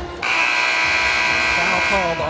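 Basketball arena horn at the scorer's table sounding one long, steady, buzzy blast of nearly two seconds, starting a moment in: the signal for a substitution during a dead ball.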